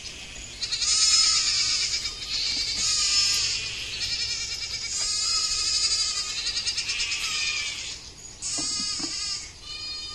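A goat bleating repeatedly with its head stuck in a plastic bucket: about four long, high, wavering bleats, the longest in the middle.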